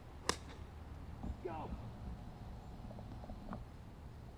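A diamond-faced Pure Spin wedge striking a golf ball on a full-swing flop shot: one sharp click about a third of a second in.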